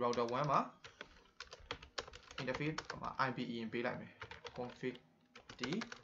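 Computer keyboard typing: runs of short, sharp key clicks starting about a second in, with speech over parts of it.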